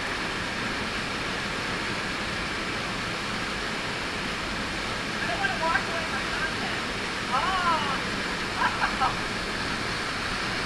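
Steady rush of a waterfall pouring into a pool of churning whitewater. A voice calls out briefly a few times in the second half.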